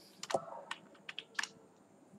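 Typing on a computer keyboard: several separate keystrokes at an uneven pace.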